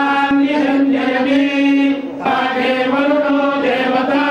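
A group of Hindu temple priests chanting Vedic mantras in unison as a blessing, the voices held on one steady pitch. The chant breaks briefly about two seconds in, then a new phrase begins.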